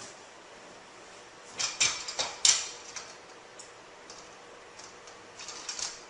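Doorway pull-up bar being fitted into a door frame: a handful of sharp metal-on-wood knocks and clacks about one and a half to two and a half seconds in, then a few lighter ticks near the end.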